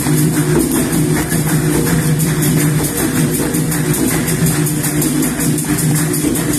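Capoeira bateria playing together: berimbaus, an atabaque hand drum and pandeiros. The pandeiro jingles keep up a fast, even rhythm over the steady tones of the ensemble.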